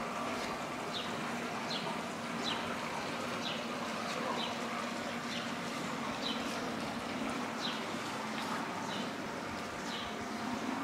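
A small bird repeating short, falling chirps about once a second over a steady low hum.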